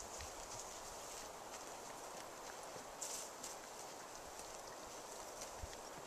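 Abaco wild horses walking on a sandy, grassy track: faint, irregular hoof falls and small clicks, over a steady high hiss.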